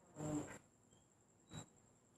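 A short buzz, under half a second long, near the start, then a brief soft brush of hands handling cloth about a second and a half in.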